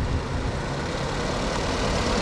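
A car driving past close by on an asphalt road: a steady rush of engine and tyre noise.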